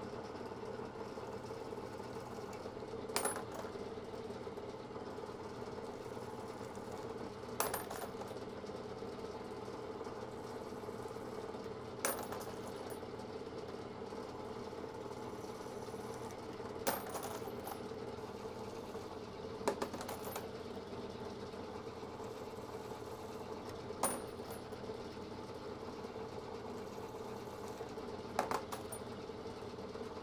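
Milling machine spindle running steadily at high speed with a Hornady case-trimming cutter head, a constant hum with a steady whine, while .308 Winchester brass cases are trimmed one after another. Seven sharp metallic brass clinks come about every four to five seconds, one per case.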